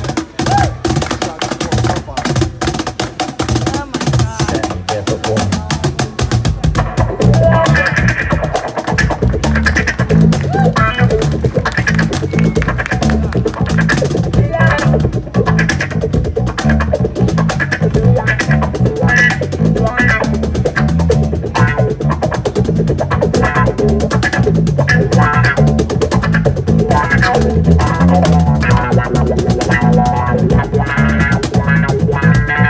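Cajon played in fast hand strokes, then about seven seconds in a bass cigar box guitar and a cigar box guitar come back in over it, carrying a steady bass groove with plucked notes on top.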